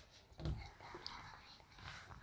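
Faint rubbing of a duster wiping marker writing off a whiteboard, with a soft low thump about half a second in.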